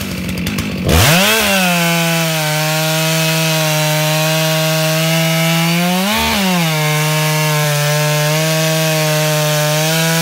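Stihl MS 661 two-stroke chainsaw cutting through a log under load. It runs rough and low for the first second, then revs up and holds a steady pitch in the cut. Around six seconds it briefly speeds up as the load eases, then drops back into the wood.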